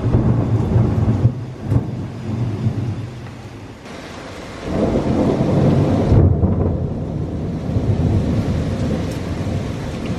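Thunder rumbling over steady heavy rain. A first roll dies down about three seconds in, then a second, louder rumble swells about five seconds in and rolls on.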